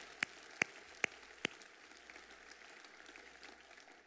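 A congregation applauding as the applause dies away, with four sharp single hand claps close by, about two or three a second, in the first second and a half.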